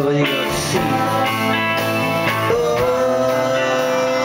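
Live rock band playing guitars and drums, with a long held note from about halfway through.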